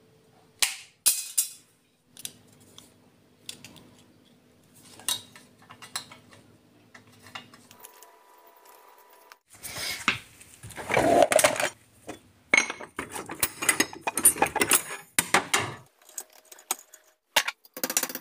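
Workshop handling sounds: light clicks and clinks of thin steel sheet and a marker on a steel welding table, then a louder stretch of metal tools clattering and rattling. Near the end, sharp hammer taps on a thin metal strip being bent over a rod clamped in a bench vise.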